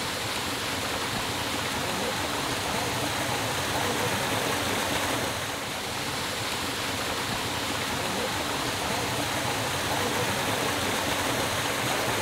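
Small waterfall pouring into a natural rock pool: a steady rush of falling water, dipping briefly about halfway through.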